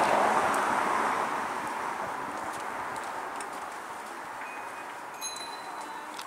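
Street traffic noise: a vehicle's tyres hissing on a wet road. The hiss is loudest about a second in and fades slowly as the vehicle moves away.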